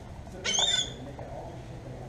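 A bird's single loud, harsh squawk about half a second in, lasting under half a second.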